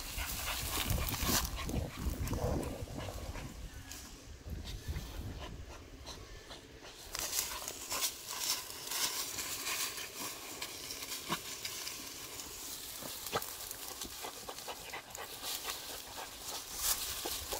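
A beagle panting as it noses through tall grass, with scattered rustles and snaps of grass stems.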